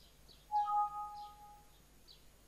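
A computer alert chime: one short ding that starts about half a second in and fades away over about a second. Faint bird chirps can be heard in the background.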